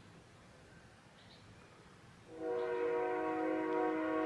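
A train horn starts blowing a little over two seconds in. It is a steady chord of several tones held without change, after a near-silent pause.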